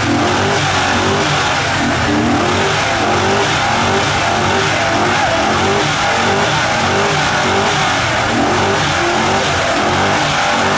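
Chevrolet truck's engine revving hard and held at high revs through a burnout, its pitch wavering up and down continuously, over the steady hiss of the spinning rear tyres.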